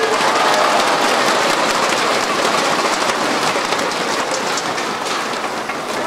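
Audience applauding, the clapping slowly fading away.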